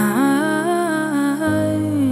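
A female voice humming a wordless, gliding melody over soft piano chords; a new chord comes in about one and a half seconds in.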